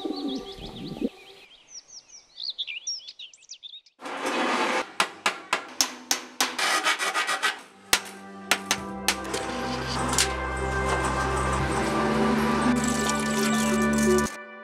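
Sparrows chirping. About four seconds in comes a dense run of sharp clicks and scraping, and from about eight seconds in music of sustained notes over a steady low bass builds up and carries on.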